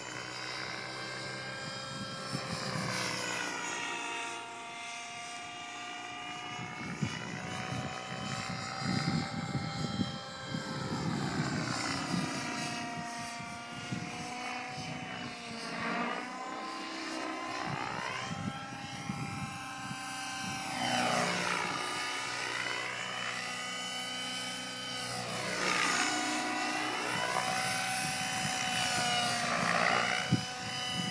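A 700-size nitro radio-controlled helicopter flying aerobatics: its engine and rotor whine sweeps up and down in pitch again and again as it swoops and passes.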